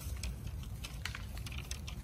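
Light, irregular clicks and crackles, several a second, over a steady low rumble.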